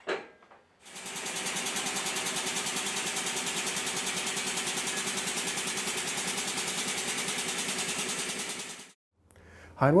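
Air-operated motorcycle lift raising a motorcycle: a steady hiss-and-buzz with a fast, even pulsing. It lasts about eight seconds and cuts off suddenly.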